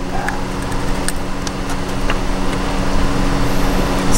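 An engine running steadily, a constant low hum of the kind a motor vehicle makes while idling, with a few faint clicks over it.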